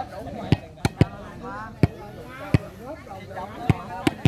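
Volleyball struck by hand during a rally: about six sharp slaps, most less than a second apart.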